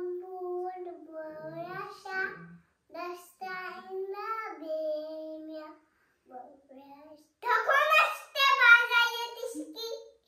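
A young girl singing a prayer song in a high voice, in short phrases with held notes and brief pauses; the last phrase, a couple of seconds before the end, is the loudest.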